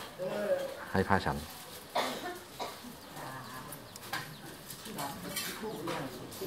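A man speaks briefly, then a low murmur of several people's voices with a few light clinks of dishes.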